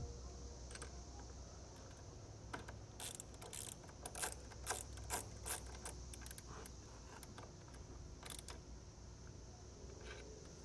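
Ratchet wrench clicking as it tightens a nut onto a threaded battery power-post stud. The faint clicks come at an uneven pace from about two and a half seconds in until near the end.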